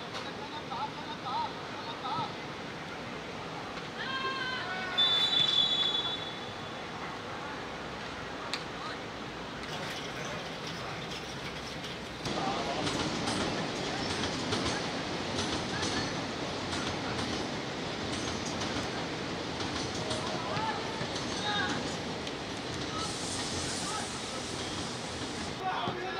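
Football match on the pitch: players shout, and a referee's whistle is blown once, about five seconds in, for about a second. From about twelve seconds in the noise of open play grows louder, with players calling out.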